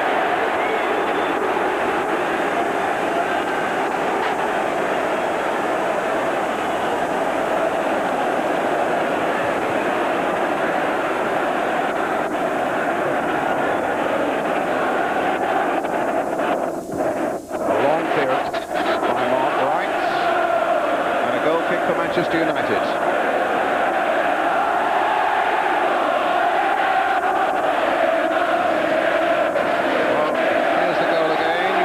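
Large football stadium crowd singing and chanting, a steady mass of voices. The sound briefly dips a little past halfway.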